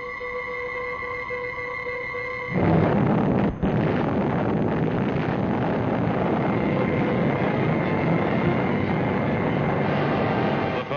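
A steady held tone for about two and a half seconds, then the atomic test blast breaks in suddenly, loud, and carries on as a continuous rumbling noise.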